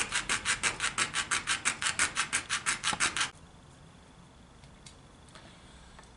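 Coping saw cutting through a plastic enclosure cover with quick, even strokes, about five or six a second, until the sawing stops about three seconds in.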